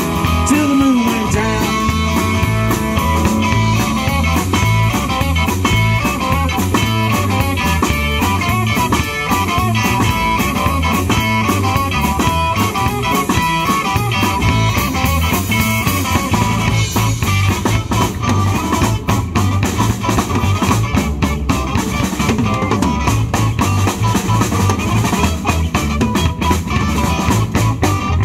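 A live rock and roll band playing an instrumental break with no vocals: electric guitars over a drum kit keeping a steady, driving beat.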